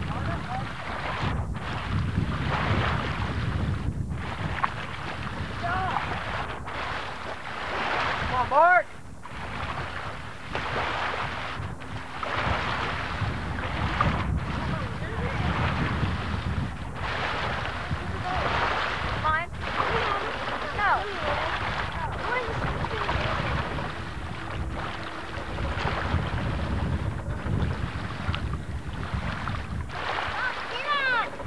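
Wind buffeting the camcorder microphone over lake water: a steady rushing noise with brief dips every two to three seconds. Faint distant voices come and go through it.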